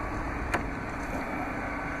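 Driver's door of a 2015 Dodge Charger being swung open, with one light click about half a second in, over a steady low hum.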